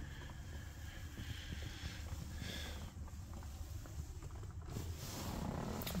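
Quiet parked-vehicle cabin: faint rustling and handling noise as a handheld phone camera is moved around, over a low steady hum.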